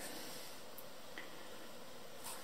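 Faint, steady hiss of room tone, with no distinct event.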